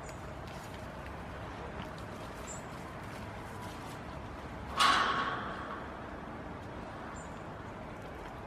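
A goat's hooves striking a galvanized welded-mesh fence panel as it rears up against it: one loud metallic clang about five seconds in, ringing briefly as it fades.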